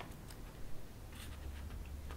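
Pages of a softcover graphic novel turned by hand: soft paper rustling with a light click at the start and another faint flick a little after a second in.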